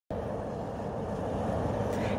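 Steady hum of distant freeway traffic, growing slightly louder.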